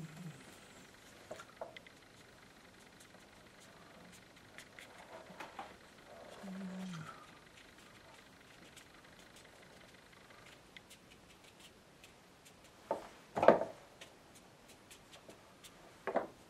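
Faint, scattered scratches of a wide flat watercolour brush dabbing grass strokes onto paper in a quiet room. A brief low hummed voice comes about six and a half seconds in, and a short, louder knock comes near the end.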